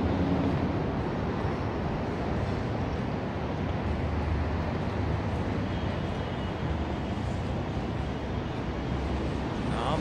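Steady low rumble of city street traffic with general urban noise.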